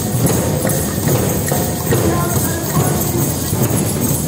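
Drum circle of djembes and other hand drums played together: many overlapping hand strikes in a dense, steady rhythm.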